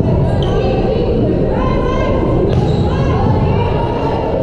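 Volleyball rally in an echoing gym: a ball struck with one sharp hit about two and a half seconds in, over steady crowd noise and voices shouting.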